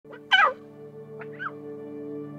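Short warbling animal calls, the loudest near the start and two fainter ones past the middle, over a sustained drone of calm background music.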